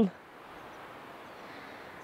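Faint, steady outdoor background noise with no distinct events, just after the tail of a man's voice at the very start.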